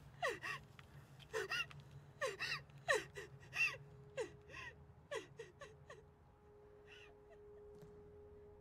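A woman gasping and sobbing in distress: a rapid, irregular run of short cries, each falling in pitch. They thin out about six seconds in as a single steady music tone takes over.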